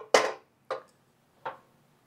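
A long metal spreader assembly being turned over and set down on a steel welding table: one sharp metallic clank, then two lighter knocks.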